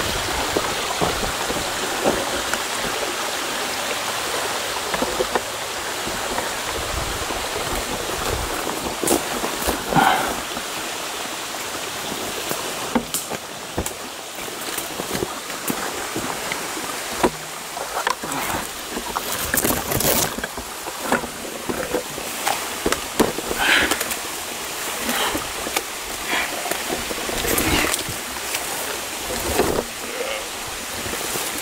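Steady rush of a small forest creek, then rustling and snapping of brush, footsteps and handling knocks as a hiker scrambles up a steep slope through undergrowth. The rustles and knocks come thick in the second half.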